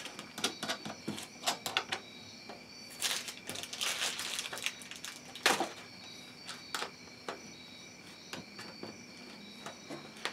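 Nuts being hand-threaded onto the steel bolts of a small wooden clamp press: scattered light metallic clicks and taps, with a rustle about three seconds in and a sharper knock about five and a half seconds in.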